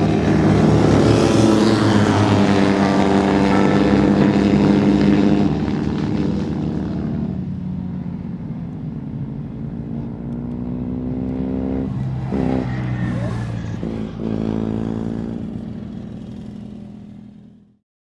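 Engines of several small historic single-seater racing cars running at speed on a circuit, the engine note shifting in pitch as they pass and accelerate. Loudest for the first five seconds, then a steadier drone that fades out near the end.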